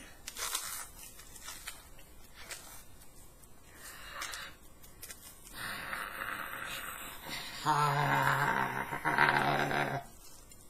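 Biting into and chewing the crispy batter crust of a deep-fried wooden log: faint crunching and tearing, with a louder patch of crunching rustle past the middle. Near the end a man hums a long, steady closed-mouth 'mmm' while chewing, the loudest sound.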